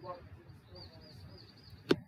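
A small bird chirping in a quick, repeated series of short high chirps over faint outdoor background noise. There is a brief vocal sound from the man at the start and a single sharp click near the end.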